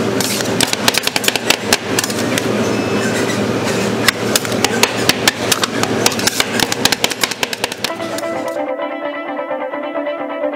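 Two metal spatulas rapidly chopping and crushing fruit on the steel cold plate of a roll ice cream machine, a quick run of sharp metal-on-metal taps, several a second. About eight and a half seconds in the tapping stops abruptly and plucked guitar music takes over.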